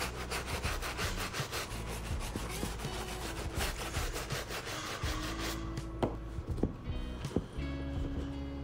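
A stiff shoe-cleaning brush scrubbing the rubber midsole of a canvas sneaker with cleaning foam, in rapid back-and-forth strokes of about four a second. After about five seconds the scrubbing stops, leaving softer rubbing and a few light knocks as the sole is wiped down with a towel.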